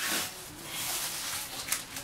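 Plastic takeout bag rustling and crinkling as food containers are pulled out of it, with a sharp click near the end.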